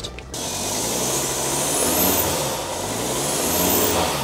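VW Touareg 2.5-litre straight-five TDI diesel running with its DPF removed, the exhaust exiting straight from the turbo, so it sounds loud and raw. It cuts in suddenly just after the start and is revved twice, a high turbo whistle rising with each rev.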